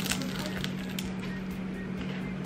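Biting into and chewing a crisp fried egg roll: a quick run of crackly crunches in the first second, then quieter chewing, over a steady low hum.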